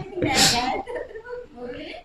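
Quiet speech from a person, with a short breathy burst about half a second in.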